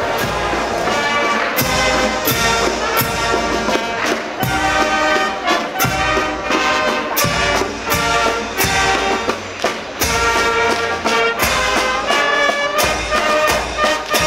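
Marching brass band playing a tune in the street: trumpets, saxophones and horns carry the melody over a steady bass drum and cymbal beat, roughly one stroke every 0.7 seconds.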